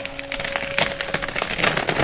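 Dense, irregular crackling and snapping over a rushing hiss, thickening about halfway through. A faint steady tone runs under the first part.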